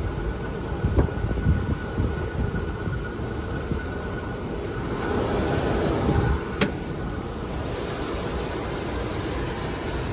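A 2009 Mercedes GL450's V8 idling quietly under a low rumble of wind on the microphone. A sharp click about six and a half seconds in is the hood latch being released.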